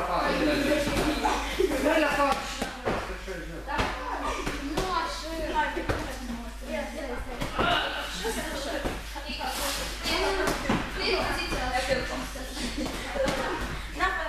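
Several people talking at once, mostly children's voices, with sharp slaps of punches landing on padded focus mitts scattered throughout.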